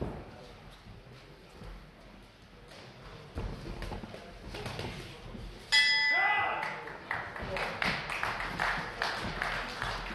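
Boxing ring bell struck once about six seconds in, ringing and fading over about a second: the signal that ends the round. Scattered thuds come before it and voices after it.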